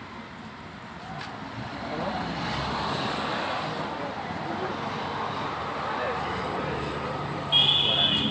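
Street traffic going by, growing louder as a vehicle draws near, then a short vehicle horn beep near the end.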